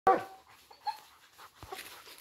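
A hunting dog gives one loud cry at the very start that falls in pitch, followed by a few faint short calls.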